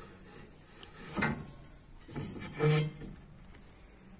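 Steel grille bars being handled against a trailer's plywood side: faint rubbing, with two brief scrapes or knocks, about a second in and near three seconds.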